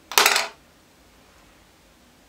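A short clatter of a small hard object knocked or set down on a hard surface, lasting about a third of a second, with a faint ring after it.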